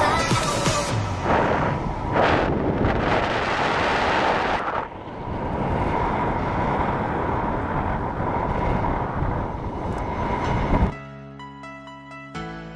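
Wind buffeting the microphone of a camera on a flying paraglider's harness, a loud steady rushing noise. It cuts off suddenly near the end, and soft music with single, separate notes follows.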